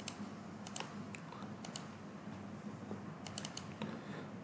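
Faint, scattered clicks of a computer mouse, several coming in quick pairs, over a low steady hum.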